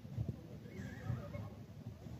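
Faint ambience of a small-sided football match: a few soft low thuds of play on the pitch and a distant wavering shout in the middle.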